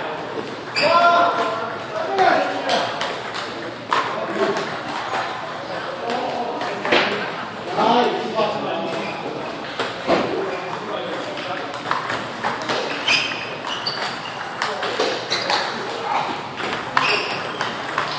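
Table tennis balls clicking off paddles and the table in scattered strokes, with people talking over them.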